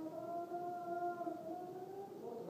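A person's voice singing or humming a slow melody in long held notes that shift gently in pitch.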